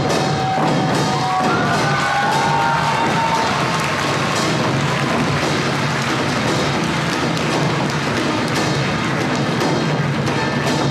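Traditional Korean drumming: a dense, fast, steady wash of drums and percussion. A high melody line wavers above it for the first few seconds.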